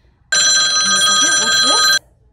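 A telephone ringing loudly: one continuous ring of several steady high tones that starts a moment in, lasts about a second and a half, and cuts off sharply.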